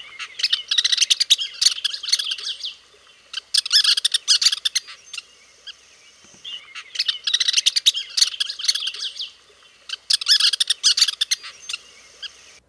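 Western kingbird calling: sharp kip notes strung together into four rapid, chattering bouts of one to two seconds each, with short pauses between them.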